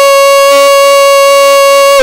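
A man's voice holding one long vowel at a single steady pitch: a camel-race commentator's drawn-out call as the leading camel reaches the finish. It breaks off suddenly at the end.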